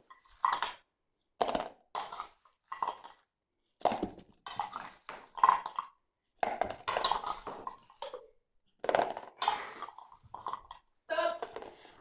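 Wrapped sweets dropped from a ladle, rattling and crinkling as they land in and around a bowl, in short irregular bursts.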